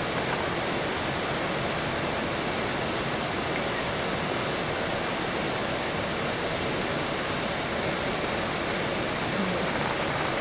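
Steady rush of a waterfall: an even, unbroken wash of falling-water noise.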